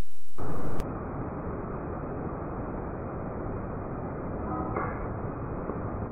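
Steady, muffled outdoor background noise, with a short pitched sound about five seconds in. It starts after a louder steady sound cuts off abruptly within the first second.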